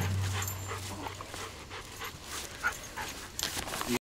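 Goldendoodle panting as it runs.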